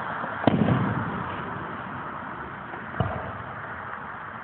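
Aerial fireworks going off: a sharp bang about half a second in, followed by a rumbling tail that fades away, then a second, weaker bang about three seconds in.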